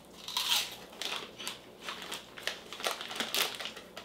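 Fresh pork rinds crunching as they are bitten and chewed, with the crinkle of the snack bag being handled: a run of short, irregular crackles.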